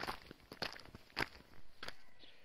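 Footsteps walking on a dry dirt path strewn with loose stones: four evenly paced steps, about one every 0.6 seconds.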